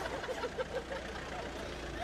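A box van driving past, its engine giving a steady low rumble.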